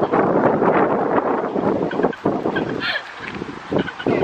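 Wind buffeting the camera microphone in loud, uneven gusts, easing somewhat after about two seconds. A few brief, faint high calls come through near three seconds.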